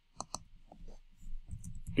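Two sharp computer mouse clicks in quick succession, then a few light keystrokes on a computer keyboard.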